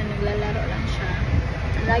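Steady low rumble inside a car's cabin, with a voice speaking briefly at the start and again at the very end.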